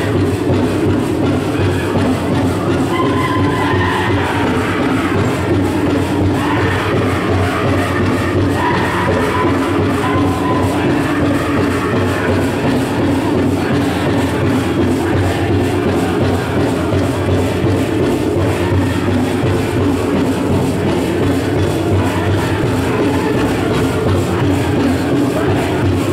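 Powwow drum group playing a jingle dress song: a steady, even drumbeat under high-pitched singing, with the rattle of the dancers' jingle-dress cones.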